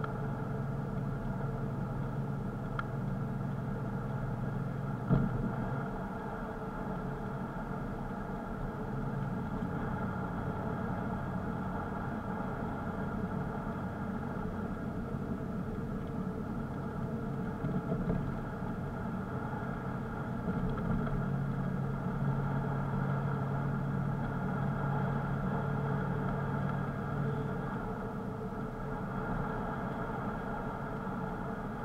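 Car engine and road noise from a car driving along, heard from inside: a steady drone whose low hum fades and returns, with one sharp knock about five seconds in.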